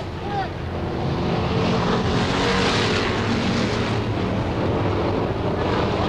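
Several Sportsman dirt-track stock cars with V8 engines running flat out around the oval. Their engines blend into one steady drone that swells slightly after the first second.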